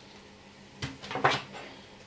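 A metal spoon picked up and set into a plastic mixing bowl: a sharp knock about a second in, then a few short clinks and knocks.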